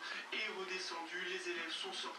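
Television sound playing faintly from a TV set's speaker: a held, wavering voice or music from a news broadcast.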